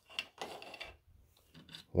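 3D-printed plastic jig pieces being handled: a sharp click just after the start, then a brief scraping rub of plastic sliding against plastic and wood, ending about a second in.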